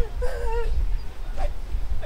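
A person's high, wavering whimpering voice, held for about half a second near the start, over a low wind rumble on the microphone.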